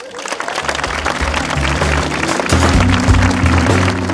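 Audience applause, with loud music coming in under it less than a second in: a bass line stepping between notes, growing louder.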